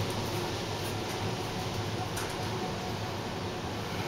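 Otis traction high-rise elevator travelling down at speed through the express zone, heard inside the cab: a steady rushing noise with a low hum.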